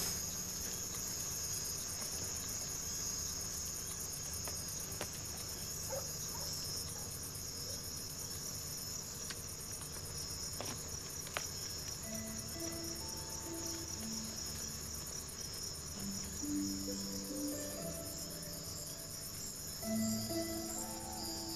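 Crickets chirring steadily in a high, continuous band. Soft, sustained music notes come in a little past halfway.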